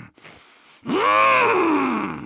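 A cartoon walrus character's voice making one long, drawn-out 'mmh'. It starts about a second in, rises in pitch, then glides slowly down.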